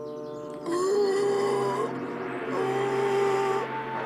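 Two long, drawn-out wailing cries, each about a second long, voiced for a cartoon fox pinned under a fallen tree and crying out in pain, over steady background music.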